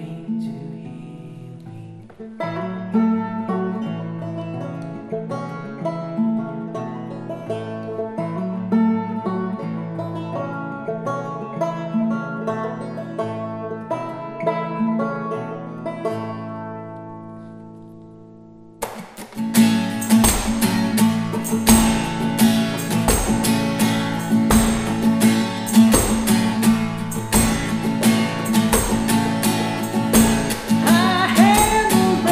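Acoustic guitar and banjo playing together. Picked notes ring out and fade away over the first half. About two-thirds of the way in, a louder, fuller strummed section starts suddenly, with a low thump about every second and a half.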